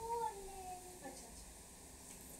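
A child's high, drawn-out wordless voice that rises slightly, then slides down and fades out within the first second.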